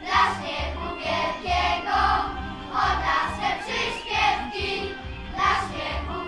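A group of children singing a song together over a recorded backing track with a steady bass beat, about two beats a second, played through loudspeakers.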